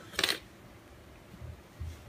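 Small handling noises: a short, sharp click or scrape about a quarter second in, then two soft, dull bumps near the end.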